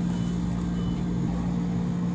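Steady low hum of café machinery running, one even low tone over a faint hiss, with nothing sudden on top.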